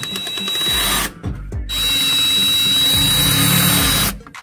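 DeWalt 20V MAX cordless drill driving assembly screws into a sheet-metal cabinet panel: the motor runs briefly, pauses about a second in, then runs again steadily and louder with a high whine until the end.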